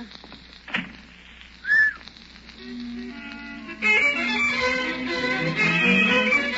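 Orchestral bridge music from a radio-drama studio orchestra, marking a scene change: strings enter softly about two and a half seconds in and swell to full orchestra about a second later. Just before it, near two seconds in, a brief loud vocal cry.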